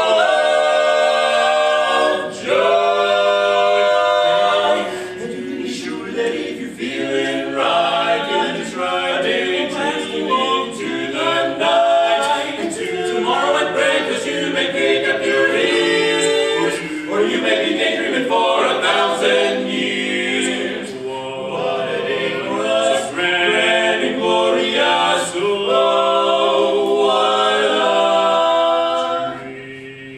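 Male barbershop quartet singing a cappella in close four-part harmony, with several long held chords. The singing falls away about a second before the end.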